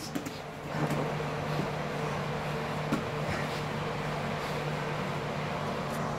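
Steady low hum of a running electric fan, with a few faint soft knocks and scuffs of bodies shifting on the mats.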